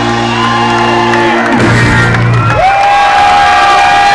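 A rock band's closing notes ringing out on amplified electric guitar and bass, the held low notes giving way about halfway to one long high sustained note. A crowd cheers and whoops over it.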